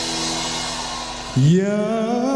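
Backing music holds a sustained chord, then about one and a half seconds in a male voice comes in loud, scooping up in pitch into a long held sung note.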